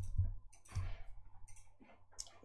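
Computer mouse clicking a few times in quick succession, with a light knock on the desk under some of the clicks.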